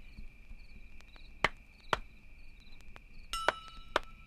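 Sparse hand percussion in a quiet, open passage of music: sharp wooden knocks about a second and a half and two seconds in, then a small bell ringing with two more knocks near the end, over a faint steady high tone.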